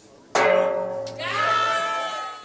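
A large gong struck once, about a third of a second in, and left ringing with several long, steady tones. It is the comedy-club gong used to force an act off the stage.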